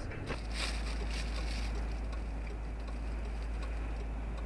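Steady low rumble of a car on the move, heard from inside the cabin: engine and road noise. It starts abruptly a moment in.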